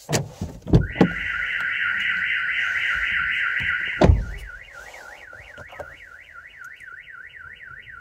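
Aftermarket car alarm siren going off in a 2020 Mazda 3, tripped while armed. A few clicks and knocks come first. Then a loud, fast warbling tone plays for about three seconds. After a thump it changes to a quieter, slower up-and-down wail, about five sweeps a second.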